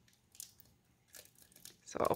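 Faint scratching and ticking of a fingernail picking at tape on a hard clear plastic card case, a few small sounds about half a second in and a few more in the second half.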